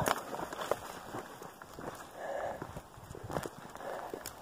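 Footsteps crunching irregularly on rocky, gravelly ground, with brush scraping against legs and clothing while walking slowly through dense sagebrush.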